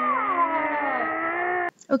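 Drawn-out wordless vocal sounds from more than one person, their pitches sliding up and down, cut off suddenly near the end.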